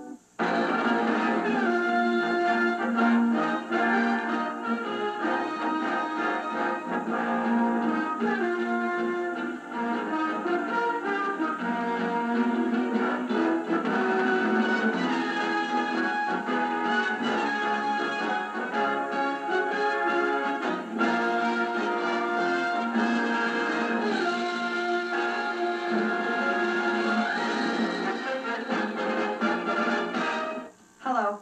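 Orchestral closing-credits theme music with prominent brass, heard through a television set's speaker; it comes in after a brief break at the very start and plays on steadily.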